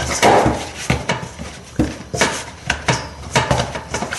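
Wholemeal pizza dough being kneaded by hand in a metal mixing bowl: irregular pushing and rubbing sounds, with several sharp knocks and clatters of the bowl as it is worked.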